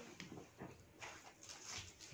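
Faint scratching and rustling of hands working loose, dry soil: a few short, soft scrapes as seeds are pressed in and covered.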